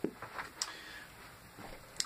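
A few faint, short clicks and taps from hands squeezing and handling a plastic glue bottle.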